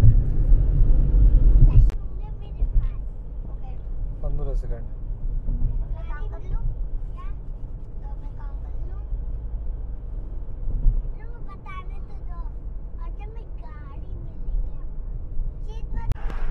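Car cabin noise while driving: a steady low engine and road rumble, heaviest for the first two seconds, with faint, indistinct voices now and then.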